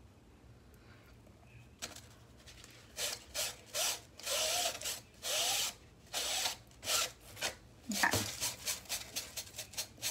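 A foam sponge dauber scrubbing paint along the cut edge of foam board in a quick series of short rubbing strokes, starting a couple of seconds in. A few strokes have a faint squeak.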